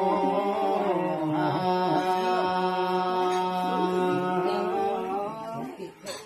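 Men's voices chanting a ritual song together in long, drawn-out, wavering notes, trailing off near the end.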